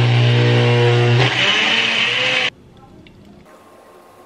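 Personal bullet-style blender running, its motor blending frozen smoothie ingredients and ice cubes with a steady hum. The tone shifts about a second in, and the motor cuts off suddenly after about two and a half seconds.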